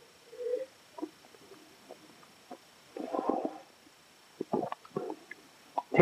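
A man sipping red wine from a glass and working it around his mouth, with a short gurgling, slurping stretch about three seconds in. A few light clicks and knocks follow later on, such as the wine glass being set down on the table.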